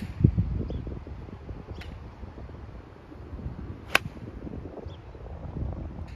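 Golf club striking a ball once, a sharp click about four seconds in, with a fainter click of another shot just before two seconds. Wind rumbles on the microphone throughout, gusting just after the start.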